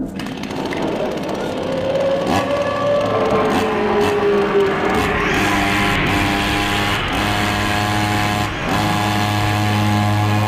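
Horror-trailer soundtrack: a harsh mechanical buzz over dense noise, with a tone falling in pitch through the first few seconds. From about halfway a steady, pulsing low drone takes over, cut by several sharp hits.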